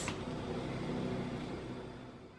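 Steady rushing noise from a gas range with its burners lit, with a faint hum, fading out near the end.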